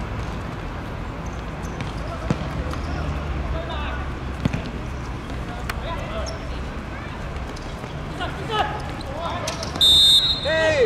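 Five-a-side football on an artificial pitch: a few sharp thuds of the ball being kicked, over players' shouts and a steady outdoor hum, then a short, loud referee's whistle blast at the very end.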